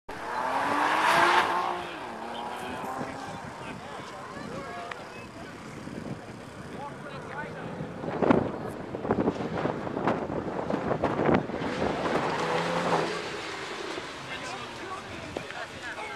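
Porsche Cayman S engine revving up and down as the car accelerates and brakes through an autocross course. It is loudest about a second in and again from about eight to thirteen seconds.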